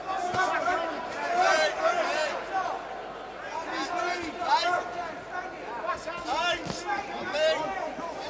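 Boxing arena crowd shouting and calling out, many voices overlapping, with a few sharp knocks near the end.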